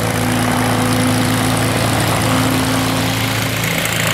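Single-engine high-wing propeller plane's piston engine running at low taxi power, a steady low hum with propeller drone, its pitch lifting slightly about two seconds in.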